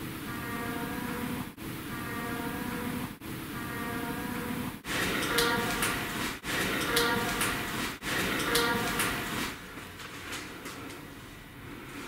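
A faint voice-like moan, boosted in volume so it sits in heavy hiss, is played three times in a row. A second, louder voice-like snippet is then played three times. The uploader presents both as ghostly voices saying "I'm sad and lonely" and "the light helps". Quieter noise follows near the end.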